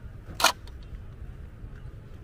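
A single sharp click about half a second in, over a low steady rumble.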